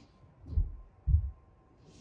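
Two dull low thumps about half a second apart, the second louder.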